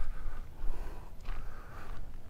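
Uneven low rumble of wind buffeting the microphone, in a short pause between words.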